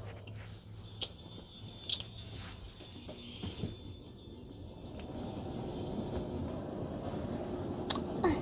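Faint taps and clicks of small plastic toy figures and furniture being handled, over a steady low hum and soft rustling close to the microphone.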